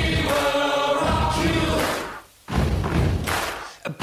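DJ mix playing: a dance track with sung vocals over a heavy bass beat. The music drops out for a moment about halfway through, comes back, then dips again just before the end.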